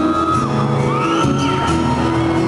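Acoustic guitars playing live in a large hall, with audience members whooping twice over the music.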